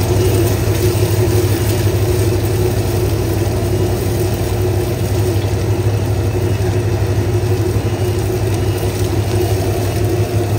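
Gas wok burner running with a loud, steady low roar and a constant hum, while eggs sizzle in oil in the wok as they are stirred.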